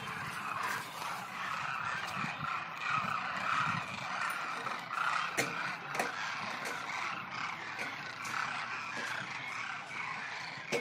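A large flock of demoiselle cranes calling all at once, a steady din of many overlapping calls. A couple of sharp clicks come about halfway through.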